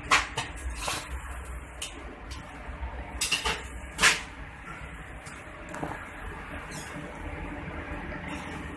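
Stainless-steel kitchen fittings being handled: a series of sharp metal knocks and clicks as steel counter lids and doors are opened and closed. The loudest knock comes about four seconds in, and a steady low hum runs underneath.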